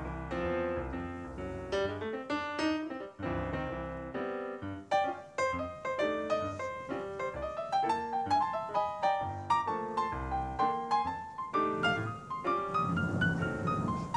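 Background piano music: single struck notes and chords following one another in a flowing melody.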